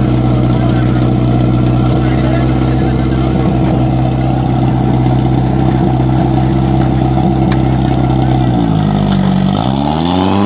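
Portable fire pump's engine running flat out at high, steady revs. Near the end the revs drop briefly, then climb again.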